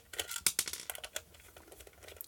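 Screwdriver working a triangular security screw out of a plastic nightlight case: a run of small clicks and scrapes, thick in the first second and thinning out toward the end.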